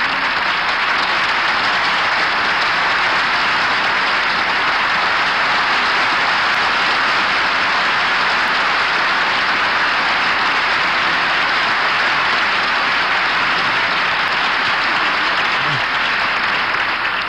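Studio audience applauding: dense, steady clapping that holds at one level.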